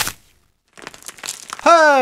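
The tail of an intro sound-effect hit fades at the start, then a short silence and about a second of faint crackling. Near the end a man's voice comes in loudly with a greeting.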